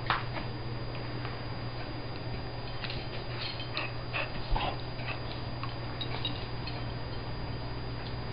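Two dogs play-fighting, with a cluster of short, high vocal sounds from them about halfway through.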